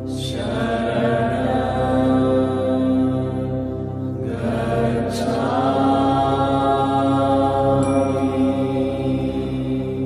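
Background music of a slow chanted mantra over a held drone, with a new chanted phrase swelling in at the start and another about halfway through.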